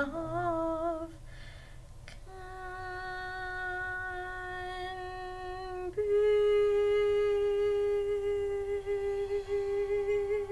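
A woman's voice singing slow, long-held notes: a wavering note ends about a second in, then after a breath comes a long steady note, and about six seconds in a higher note is held to the end.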